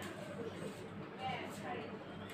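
Faint voices talking in the background, low and indistinct.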